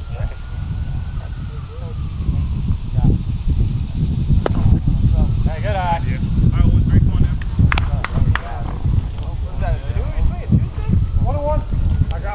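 Outdoor baseball-game ambience: a steady low rumble under distant shouting voices of players, with a few sharp knocks in the middle.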